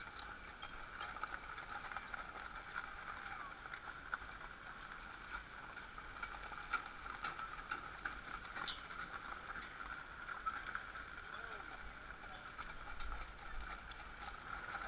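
Hooves of draft horses clip-clopping on a gravel road as horse-drawn covered wagons roll past, with scattered knocks and clicks over a steady high hum.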